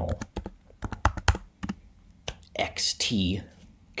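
Typing on a computer keyboard: a quick run of about a dozen keystrokes in the first second and a half, then a pause in the typing.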